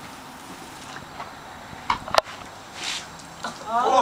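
Quiet room background with a single sharp click a little over two seconds in, then voices starting near the end.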